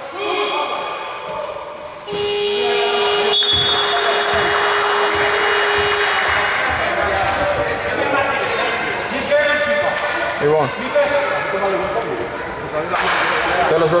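A gym's game horn gives one steady buzz of about four seconds, starting about two seconds in, as play stops. Voices shout on the court and a ball bounces on the hardwood in a large echoing hall.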